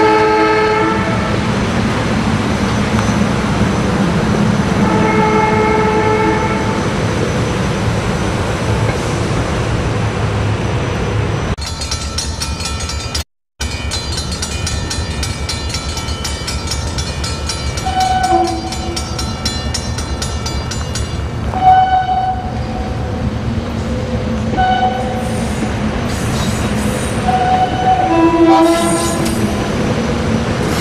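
A train horn sounds two blasts, a short one and then a longer one about five seconds later, over the steady rumble of a train at a station. After a brief cut in the sound, several shorter horn toots follow.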